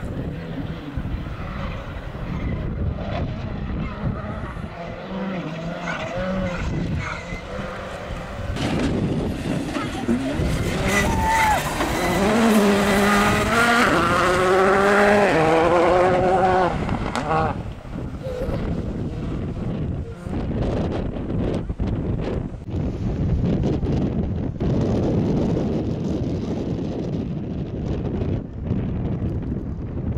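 Rally car engine revving hard as it passes, its pitch climbing repeatedly through the gear changes and loudest in the middle.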